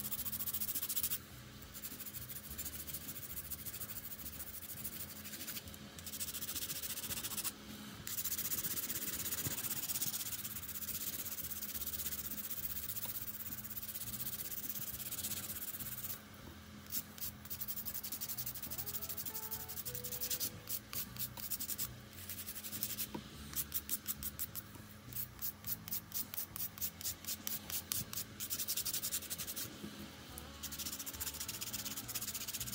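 A nail file rubbing against plastic nail tips: continuous filing at first, then quick back-and-forth strokes, about three a second, over the last third.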